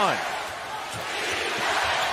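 Arena crowd noise with a basketball being dribbled on a hardwood court, a few faint bounces.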